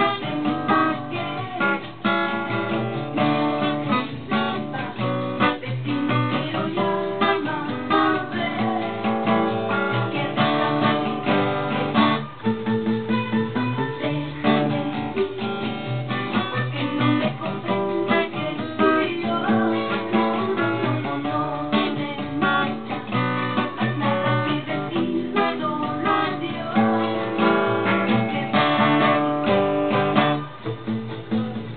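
Solo acoustic guitar playing a chord accompaniment, the chords strummed and picked in a steady rhythm.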